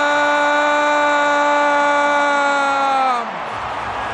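A male football commentator's long goal call: one high shout held on a single note, which falls away a little past three seconds in.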